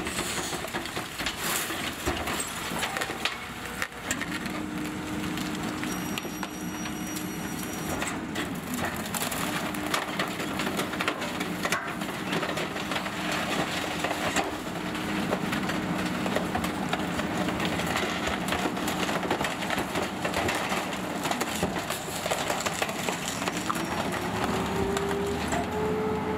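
McNeilus rear loader's packer blade cycling, crushing and splintering brush and wood waste in the hopper with constant cracking, over a steady hydraulic drone from the engine held at raised speed that drops off before the end. Near the end the Peterbilt 520's engine rises in pitch as the truck pulls away.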